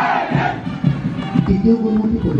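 A loud shouted cry that falls in pitch in the first half second, over parade music with held notes that carries on after it.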